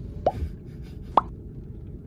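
Two short rising 'bloop' pop sound effects about a second apart, from an animated subscribe-button overlay, over the low hum of a car's cabin.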